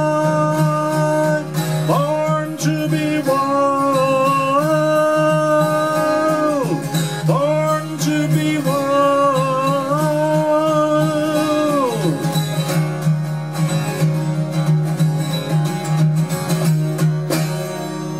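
12-string acoustic guitar strummed, tuned down a half step, with a man singing long held notes over it for roughly the first twelve seconds. After that the guitar carries on alone, easing off just before the end.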